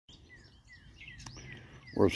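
Wild songbirds calling in the brush: a mix of high chirps and a few short falling whistles repeated at intervals.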